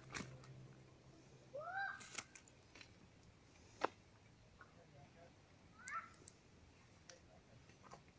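Two short animal calls that rise and fall in pitch, about a second and a half in and again near six seconds, among a few sharp clicks, the loudest about four seconds in.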